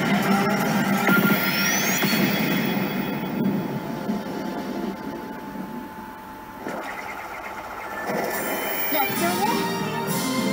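Pachislot machine's speaker playing a battle sequence: music with sound effects and anime character voice lines. It grows quieter through the middle and builds up again near the end.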